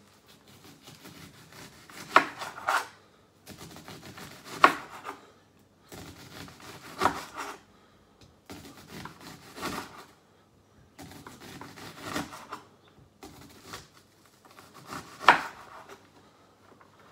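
Large kitchen knife slicing a red onion on a chopping board. Runs of rasping cutting strokes, each ending in a sharp knock of the blade on the board, come in bursts every couple of seconds.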